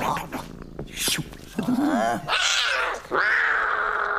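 Cartoon cat snarling and hissing, then letting out one long, loud yowl from about three seconds in.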